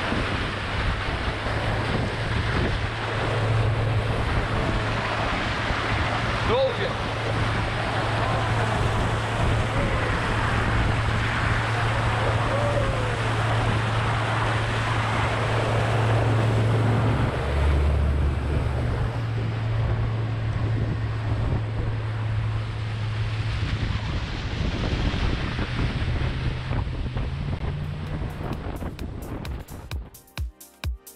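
Small open motorboat running fast: a steady low engine drone under the rush of water along the hull and wind buffeting the microphone. The engine note shifts briefly about two-thirds of the way through.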